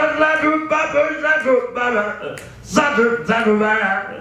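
A man's solo a cappella scat singing into a microphone: wordless phrases of held and sliding notes with short breaths between them, and no instruments.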